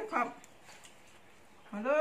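A person speaking in Thai: a short spoken word at the start, then a pause, then drawn-out speech starting near the end.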